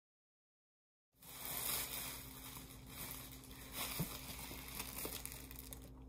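Dead silence for about the first second, then cardboard box flaps and plastic packaging wrap rustling and crinkling as a flat-pack cart's shipping box is opened and handled.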